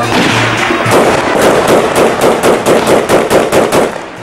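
A rapid run of gunshots, several a second, as celebratory gunfire. The steady drone of the mizmar pipe drops away about a second in.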